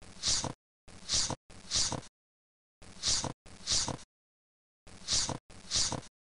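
Chess program's move sound effect, a short breathy whoosh played seven times, once for each move as the game is stepped through, mostly in quick pairs with pauses between.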